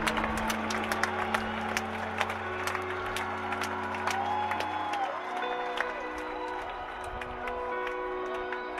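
Sustained synthesizer pad chords through a stadium PA, shifting to a new chord about five seconds in. Scattered crowd clapping and a few rising-and-falling whistles sound over it.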